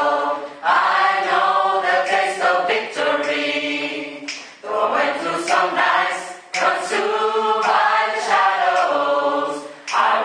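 Mixed-voice gospel choir singing a cappella in harmony. The chords are held in phrases of a few seconds, with brief breaks between them.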